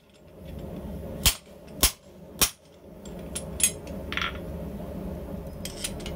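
Hand hammer striking the top die of a guillotine fuller on a hot square bar of tool steel: three loud sharp blows about half a second apart, then a few lighter taps, with a steady low hum underneath. The blows fuller a groove that marks the jaw and pivot end off from the handles.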